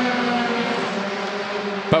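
Formula 3 single-seater race car engine running at high revs, its note dropping in pitch partway through.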